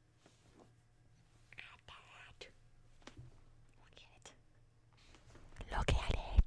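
A woman whispering softly, with light clicks and rustles between the words. Near the end comes a louder rustle with a few low thumps.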